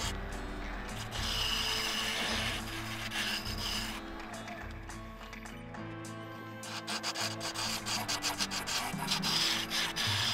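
A wood lathe spins a laminated hardwood mallet blank while a turning tool scrapes and cuts it, with continuous rasping as shavings come off. The cutting eases off in the middle, and the lathe's hum drops away as the blank stands still. Rapid scratchy cutting resumes over the last few seconds.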